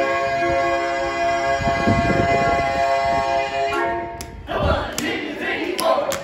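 Barbershop quartet singing a cappella, holding a sustained close-harmony chord that ends about four seconds in. A jumble of noise follows, with sharp clicks near the end.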